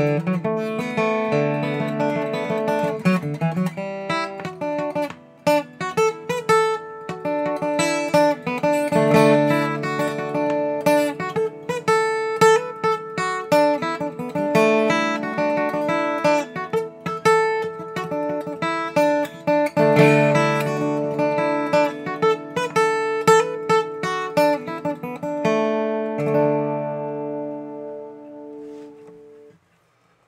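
2002 Gibson J-45 acoustic guitar playing a fiddle-tune melody with chords in the key of D, no capo. Near the end the tune stops on a last chord that rings out and fades.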